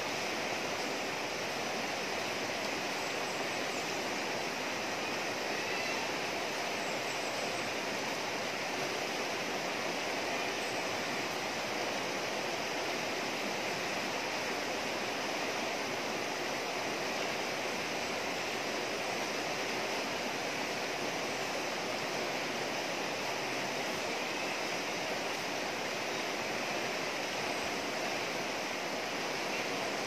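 Shallow rocky river flowing steadily, its water rushing over stones in a continuous even wash.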